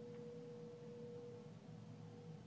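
A faint, steady, pure electronic tone that weakens after about a second and a half, over a low background hum.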